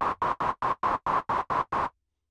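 Korg opsix synthesizer playing white noise through a resonant filter-mode operator: quick staccato notes, about six a second, each a short hiss with a ringing tone at one pitch set by the filter cutoff. The resonance puts a pitch onto the unpitched noise.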